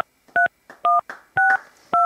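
Phone keypad touch-tone (DTMF) beeps as a number is dialled: short two-tone beeps about two a second, each key giving a different pair of pitches.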